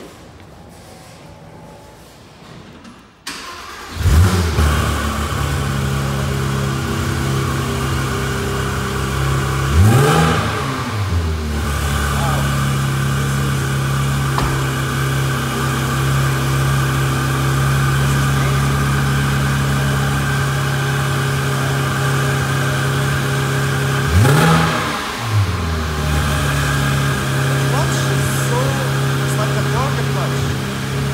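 Porsche 911 GT3 (991.2) 4.0-litre flat-six starting about four seconds in, flaring on the catch and then settling into a steady idle. It is blipped twice, about ten seconds in and again near 24 seconds, each rev rising and dropping back quickly to idle.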